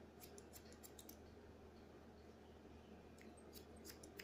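Hair-cutting scissors snipping hair, faint: a quick run of snips in the first second, a pause, then a few more near the end.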